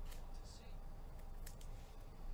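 Trading cards being handled and flipped by hand: a few short, light flicks and rustles of card stock.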